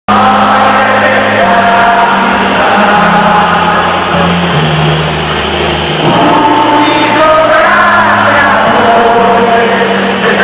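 Music: a song sung by a mass of voices, choir-like, over held low notes that step slowly from pitch to pitch.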